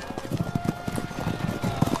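Horse hooves clopping in an uneven run of knocks, under a single held note of background music.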